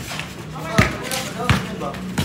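A basketball bouncing twice on a concrete court, two sharp slaps less than a second apart, with players' voices calling out around them.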